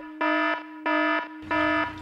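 Electronic alarm-like buzzer sound effect: a steady buzzing tone with three louder beeps on top, about two-thirds of a second apart.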